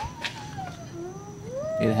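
Faint animal calls: two drawn-out cries that glide up and down in pitch, the second rising near the end.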